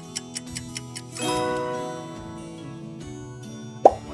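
Quiz countdown-timer clock ticking, about four ticks a second, over background music. About a second in, the ticking stops and a bright musical chord rings out and fades as time runs out. Just before the end comes a short, sharp pop, the loudest sound here.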